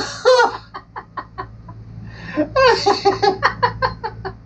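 A man laughing hard in bursts. A laugh at the start breaks into a run of short pulses, and after a lull a second run of laughter comes about two and a half seconds in.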